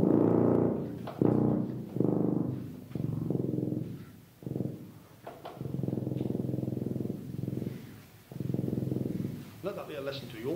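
Tuba playing a string of very low pedal-register notes, the bottom edge of its range, about seven notes with short gaps, the longest held for about two seconds near the end.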